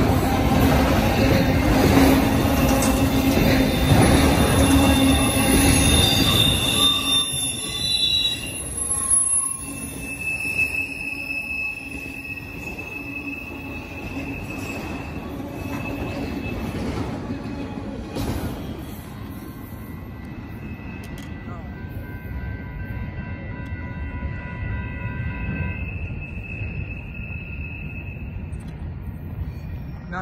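Freight train of autorack cars rolling past: a loud rumble of wheels on rail for the first several seconds, then quieter, with thin, steady high-pitched wheel squeals held through most of the rest.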